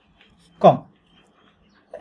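A man's voice saying a single drawn-out word ("kom", "less") with a sharply falling pitch about half a second in, with faint scratches of a felt-tip marker writing on a whiteboard around it.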